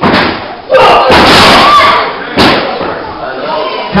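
Loud slams of wrestlers' bodies hitting the wrestling ring, about three impacts (at the start, just under a second in, and about two and a half seconds in), with voices over them.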